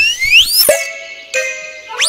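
Cartoon sound effects: several quick upward-sliding whistles in the first half-second, a fast downward slide just after, then short held tones at a steady pitch.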